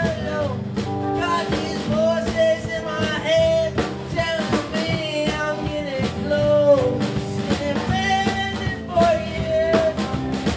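A live song: a singer holding and bending sung lines over a steadily strummed guitar, with a rock-and-roll, folk-punk feel.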